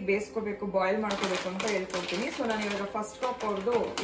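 A woman talking throughout, with the crackle of a plastic snack packet crinkling in her hands from about a second in.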